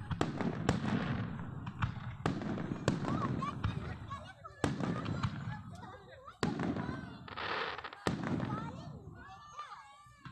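Aerial fireworks bursting overhead: about ten sharp bangs at irregular intervals of roughly half a second to a second and a half, with a low rumble rolling on between them.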